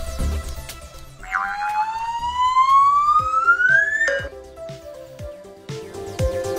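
Background music with a rising whistle sound effect laid over it. The whistle climbs steadily in pitch for about three seconds and then cuts off sharply.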